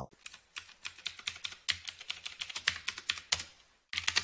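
Computer keyboard being typed on, a quick run of key clicks that pauses briefly about three and a half seconds in and then resumes, as C code is edited.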